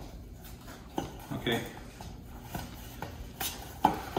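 Soft, scattered knocks and scrapes of a metal cake pan being handled while a stick of butter is rubbed around inside it to grease it, with a few short clicks over a quiet background.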